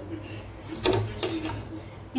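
A steady low hum under a faint hiss. About a second in, two brief short sounds come close together, possibly a soft voice.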